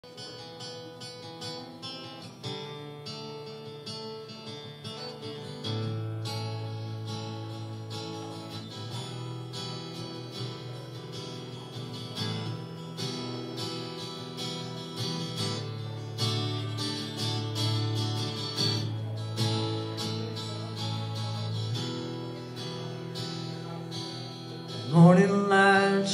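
Acoustic guitar playing an instrumental intro of plucked chords and single notes. A man's singing voice comes in near the end, and the sound gets louder.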